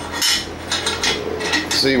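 A quick series of light metal clinks and rattles from the steel parts of a homemade rod-bending jig, a pipe ring with square-tube posts, as it is handled on a steel bench.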